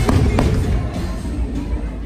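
Aerial fireworks over the show's music: two sharp bangs within the first half second, with the music carrying on beneath.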